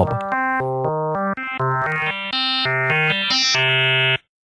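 Sytrus FM synthesizer playing a run of short notes that step up and down in pitch. Operator 1 starts as a plain sine tone and grows brighter and buzzier as the amount of frequency modulation from operator 2 is turned up, the tone becoming more and more harmonically rich.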